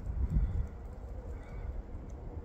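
Phone handling noise as the camera's zoom is fumbled: a few soft bumps about half a second in, then a low rumble on the microphone.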